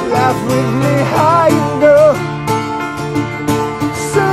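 Guitar and keyboard playing an instrumental passage, with sustained low notes under a wavering melodic line.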